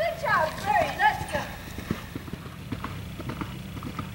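A person's high voice calls out in a short burst of rising and falling shouts, followed by a horse's hoofbeats on turf as it gallops away after a cross-country fence.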